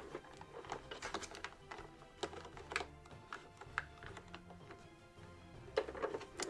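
Light, irregular plastic clicks and taps as a G.I. Joe action figure is fitted into the cockpit seat of a plastic toy vehicle, over faint background music.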